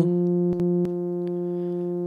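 Steady synthesizer drone from a Make Noise Mangrove oscillator through the Synthesis Technology E440 low-pass filter, one held pitch with a stack of overtones. A couple of sharp patch-cable clicks come a little over half a second in. The tone then drops in level and turns more mellow as the filter's four-pole output is patched into the mix.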